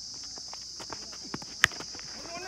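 A weighted tennis ball struck by a cricket bat: one sharp crack about three quarters of the way through. It comes over a steady high drone of insects and follows a run of faint footfalls.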